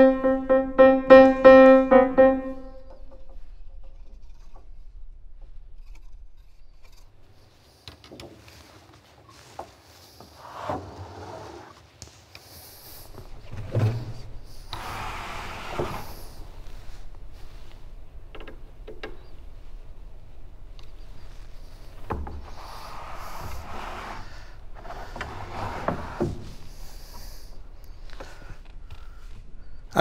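A Steinway grand piano note struck several times in quick succession, dying away about two and a half seconds in. Then faint knocks, clicks and scraping as the technician works on the piano to tighten a regulating screw, which changes the hammer's speed and so the tone colour.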